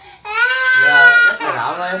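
Toddler crying: one long, loud, high-pitched wail that starts about a quarter second in and breaks off after about a second, the cry of a jealous child pushing his father away from another child.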